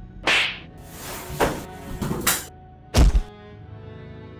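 A series of four sudden whacks and thuds over background music, the last and loudest, about three seconds in, a deep heavy thud.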